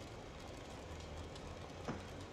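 A faint, steady low hum of room tone, with one short soft sound just before the end.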